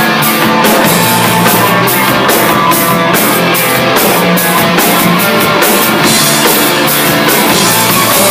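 Live rock band playing loudly: electric guitar, electric bass and a drum kit keeping a steady beat on the cymbals, about two strokes a second. In the last two seconds the cymbals wash more continuously.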